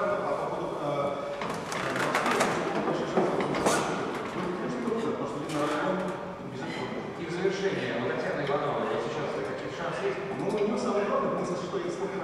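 A man's voice speaking throughout, with a few sharp knocks about two to four seconds in.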